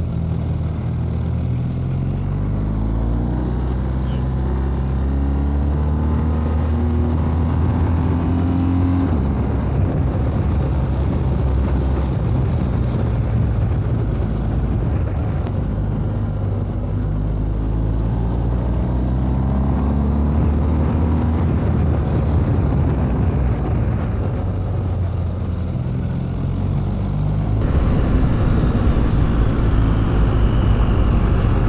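BMW R 1250 GS boxer-twin engine under way through mountain bends: its pitch climbs through the first nine seconds or so, drops as the throttle eases, then climbs again, with a dip and a louder pull near the end. A steady wind and road hiss runs beneath the engine.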